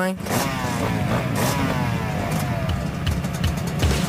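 Dirt bike engine running, its note falling in pitch over the first two seconds or so, mixed with background music.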